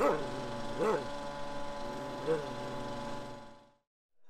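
Three short, soft voice sounds over a steady hum, fading out to silence near the end.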